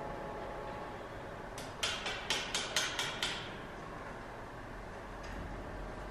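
Steady workshop background noise, broken about two seconds in by a quick run of about seven sharp clicks or taps, some four a second.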